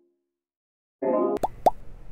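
Silence for about a second, then room tone cuts in with a short pitched tone and two quick pops a quarter second apart: an editing sound effect for an animated on-screen caption.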